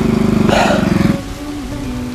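A small engine running at a steady pitch, with a brief hiss about half a second in. The engine stops abruptly just over a second in, leaving a quieter steady tone.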